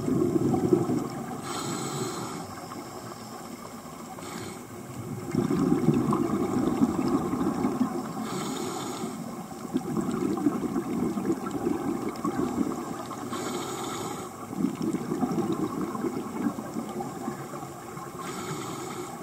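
Scuba diver breathing through a regulator underwater, with a short hiss on each inhalation and a long low rumble of exhaled bubbles. About three breaths repeat in a slow cycle.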